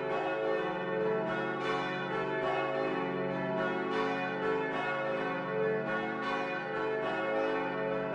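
Church bells pealing: strike after strike in quick succession over a lingering ringing hum.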